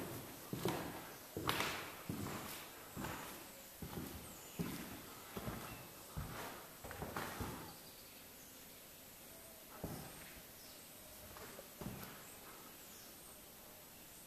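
Footsteps walking at a steady pace, about one step a second, then slowing to a few scattered steps about halfway through.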